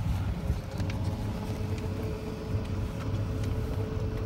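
Electric golf cart in motion: a steady low rumble of the ride, with a thin, even whine that comes in about a second in and holds.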